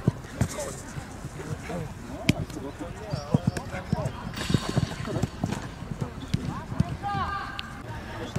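Footballs being kicked and players' running footsteps on an artificial-turf pitch: a quick, irregular series of short thuds. Voices call out around it, with a laugh about five seconds in.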